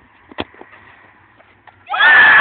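A single sharp thud of a football being kicked, about half a second in. Loud shouting voices break out right at the end.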